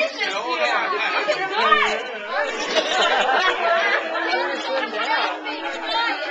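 Several people talking over one another at once: indistinct group chatter.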